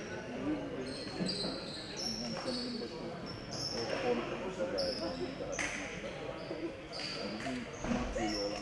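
Basketball shoes squeaking on a hardwood court in a large reverberant hall, short high squeaks coming every second or so, over indistinct chatter of voices and a few sharp thuds of the ball.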